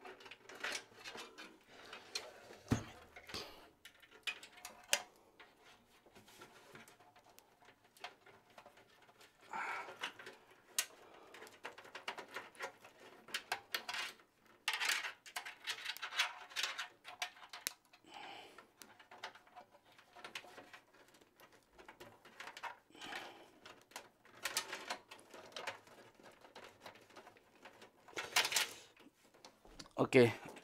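Irregular light clicks, knocks and rustling from hands handling a PC case and feeding the front-panel audio cable through it.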